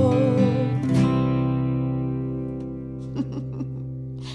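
The song's last sung note, a woman's voice with vibrato, ends about a second in, and the closing acoustic guitar chord rings on and slowly fades.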